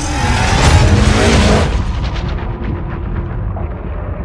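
Logo-sting sound effect: a loud boom with a rumbling, noisy tail, loudest about a second in and slowly dying away over the following seconds.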